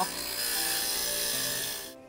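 Stained-glass grinder running, its diamond bit grinding the rough edge off a cut piece of glass in a steady hiss that stops just before the end. Soft background music underneath.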